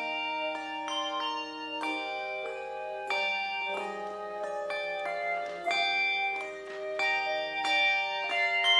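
A handbell choir playing a piece: many struck handbells ringing together in chords, with new notes struck every half second or so while earlier ones sustain.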